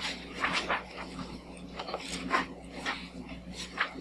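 Sheets of paper rustling and being shuffled by hand, a rapid, irregular string of short crinkles, over a steady low room hum.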